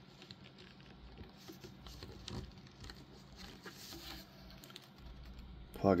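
Small plastic action-figure parts handled between fingers: faint, irregular clicks and scratches as a tiny figure hand and a translucent effect piece are fitted together.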